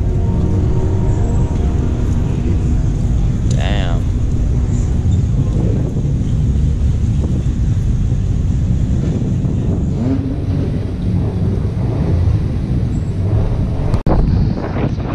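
Steady low rumble of wind on the microphone, with car engines running and people talking in the background.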